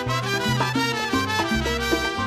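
Latin dance music in a salsa style, instrumental here, with a bass line moving under it.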